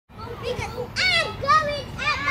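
Children's high-pitched voices talking and calling out in short phrases.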